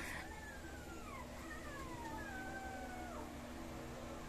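Dogs howling faintly: two or three long calls that overlap, each sliding slowly down in pitch and dropping off sharply at its end.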